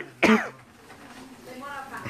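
A person coughs once, short and loud, just after the start, then the faint murmur of voices in a crowded hall.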